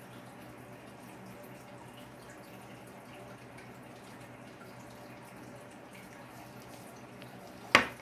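Faint, steady crackle of a pyrography pen's hot wire tip burning into a wooden plaque, over a low hum. Near the end comes a single sharp knock as the pen is laid down on the wooden desk.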